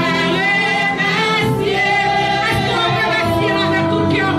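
Live gospel praise singing in church: a group of amplified voices singing together in long, held phrases, a woman's voice leading.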